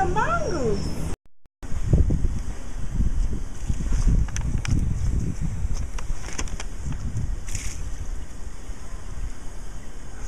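Indistinct voices and an uneven low rumble typical of wind on the camera microphone. The sound cuts out completely for a moment about a second in, then the rumble carries on with a few faint clicks.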